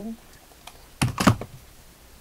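A quick clatter of several hard knocks about a second in, as a hot glue gun is set down on the craft table.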